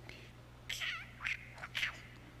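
Door hinge creaking open in three short squeaks.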